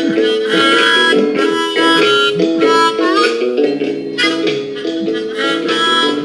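Harmonica playing a tune in chords, several notes sounding at once and changing about two or three times a second, with one note bent upward about halfway through.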